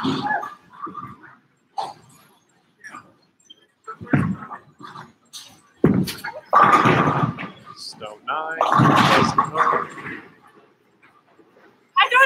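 Bowling balls rolling down lanes and pins crashing, several times in quick succession, mixed with excited voices and yelps.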